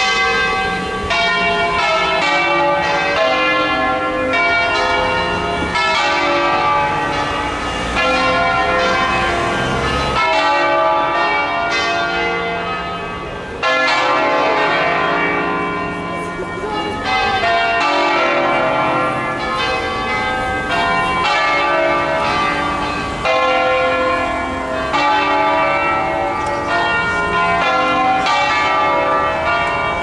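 A six-bell church peal in C, the bells swung by hand and struck one after another in quick succession, with several pitches ringing over each other. The sound stays loud, with a brief dip about a third of the way in.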